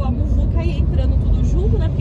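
Steady low rumble of a car's tyres and engine, heard from inside the cabin while it cruises on a highway.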